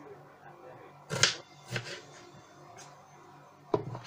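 A kitchen knife knocking on a plastic cutting board as an onion is chopped. A few sharp knocks come through: the loudest about a second in, a smaller one soon after, and another near the end.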